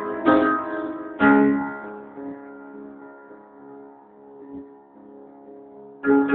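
Guitar strumming two chords, about a third of a second and just over a second in, each left to ring and fade away, with a couple of soft single notes later in the fading sound.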